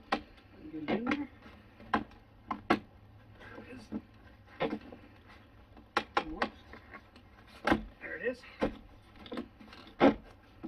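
Vinyl downspout pipe knocking and clicking as it is handled and pushed up into its wall brackets: irregular sharp plastic taps, about one a second, with a few closer together near the middle.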